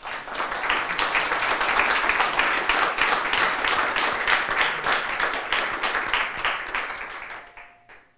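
Audience applauding at the end of a talk: the clapping starts at once, holds steady for several seconds and dies away near the end.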